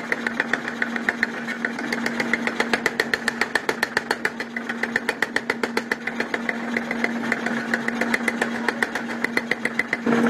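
Mechanical power hammer pounding a red-hot steel spade blade in rapid, even blows, over the machine's steady motor hum.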